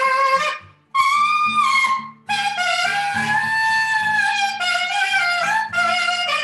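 Alto saxophone playing a melody in short phrases broken by brief pauses, with one long held note in the middle, over acoustic guitar chords.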